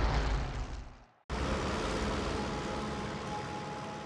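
A low rumble fades out over the first second and cuts to a moment of silence. Then comes a steady drone of propeller aircraft engines in flight.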